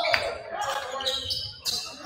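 A basketball bouncing on a hardwood gym floor, a couple of sharp bounces, under the voices of a crowd in the hall.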